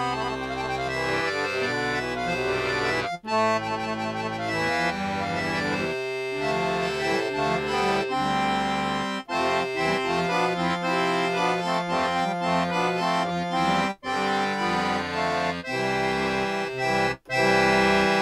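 Sampled accordion from BeatHawk's Balkans expansion pack playing sustained chords and notes, with a few brief breaks where the chords change.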